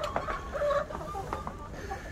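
Chickens clucking in short, scattered pitched notes over a low steady hum.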